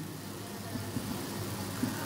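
Steady room hum and hiss, with faint short scratches of a marker writing on a whiteboard in the second half.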